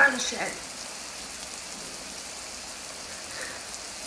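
A woman's brief crying, wavering vocal sound in the first half second. It gives way to a steady, even hiss of background noise.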